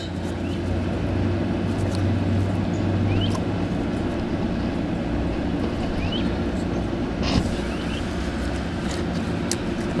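A steady low mechanical hum, with a few faint short rising chirps and a couple of light clicks, the clearest about seven seconds in.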